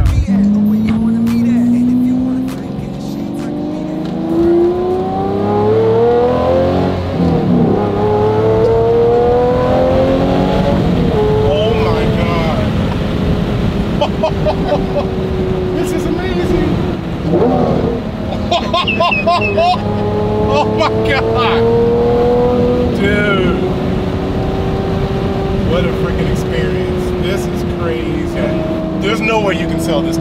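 Lamborghini V12 engine heard from inside the cabin, pulling hard through the gears. Its note climbs steadily and drops sharply at an upshift about 7 seconds in, climbs again to another shift near 11 seconds, then runs at a steadier pitch that rises and falls with the throttle.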